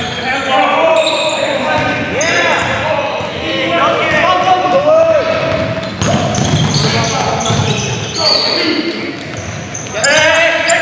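Live basketball game sound in a gym: a ball dribbling on a hardwood court, sneakers squeaking in short sharp chirps, and players' voices, all echoing in the large hall.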